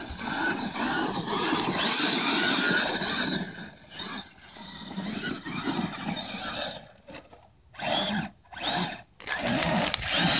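Traxxas E-Maxx electric RC monster truck's motors whining under throttle, rising and falling in pitch as it drives across sand and up a sandy slope. The run is steady for the first few seconds, then turns into short throttle bursts in the last few seconds.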